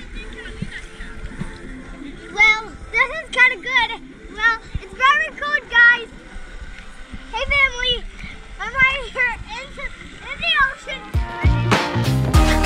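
A young child's high-pitched, wordless squeals and calls in short bursts while swimming, over faint water splashing. Music starts near the end.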